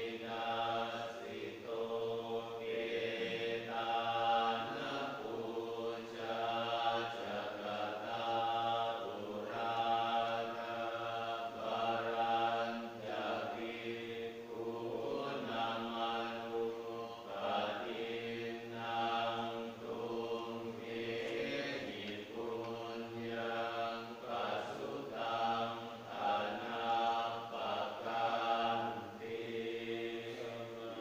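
Buddhist monks chanting together in unison, a steady recitation on a few held pitches in phrases of a couple of seconds with short dips between.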